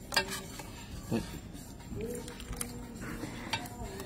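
Serving spoon clinking and scraping against foil food trays and a metal bowl, with about three sharp clinks among quieter handling noise.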